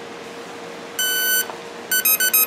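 Brushless outrunner model-aircraft motor sounding its speed controller's power-up beeps as the battery is connected: one held beep about a second in, then a quick run of short beeps at changing pitches near the end.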